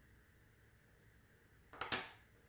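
A short clatter of light, hard knocks near the end as a wooden measuring stick is set down on the wooden edge of the table. Faint room tone before it.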